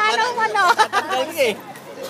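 People talking and chattering close by, voices overlapping.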